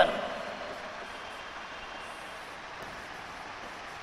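Steady, even background hiss of room noise with no distinct events, under the trailing end of a spoken word at the very start.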